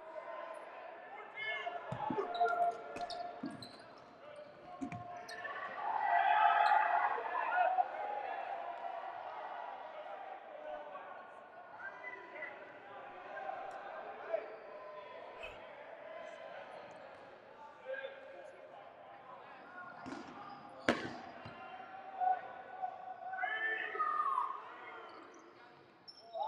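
Dodgeballs bouncing and smacking on a hardwood gym floor, a handful of sharp thuds scattered through, the sharpest about three quarters of the way in, over the voices of players and spectators calling out.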